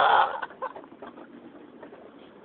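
A man's hoarse, shouted word trails off in the first half-second. A pause follows with only faint background noise and a few soft clicks.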